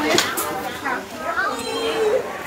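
Overlapping chatter of several women's voices, with a young child's voice among them.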